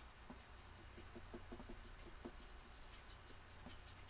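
Faint, irregular scratching and tapping of a paintbrush mixing watercolour paint in a plastic palette well.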